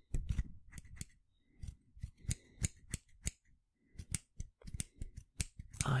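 Scissors snipping close to the microphone: a quick, uneven run of crisp snips, about three a second.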